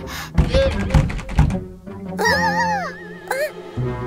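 Cartoon sound effects over background music: three heavy thuds about half a second apart, then a wavering, warbling wail.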